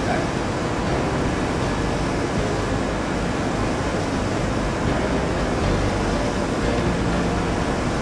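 Steady rushing background noise with no distinct handling sounds.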